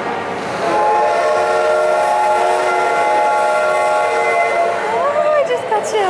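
Steam locomotive whistle blowing one long, steady chime of several notes at once for about four seconds, then stopping.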